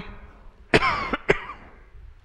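A man coughs about a second in, a short rough burst followed by a second, briefer one.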